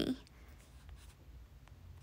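A quiet pause: low room hum and hiss with a couple of faint ticks, after the end of a spoken word at the very start.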